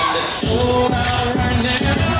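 Recorded pop music with a steady beat and a singing voice, played over a gymnasium sound system.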